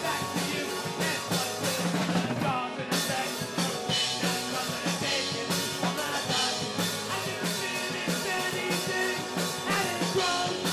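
Live rock band playing a song with a drum kit keeping a steady beat.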